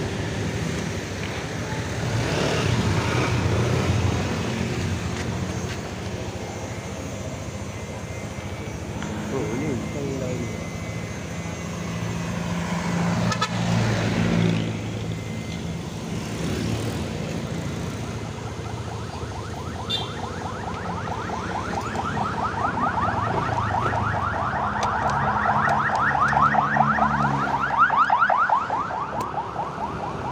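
Yamaha NMAX scooter's single-cylinder engine running as the scooter pulls away and rides slowly. From about two-thirds of the way in, a fast warbling siren sounds over it.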